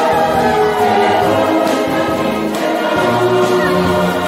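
Mixed songster choir singing with a massed brass band accompanying, in sustained full chords.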